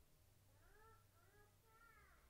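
Faint cat meowing in the background: three short meows in quick succession, each rising and falling in pitch, over a low steady room hum.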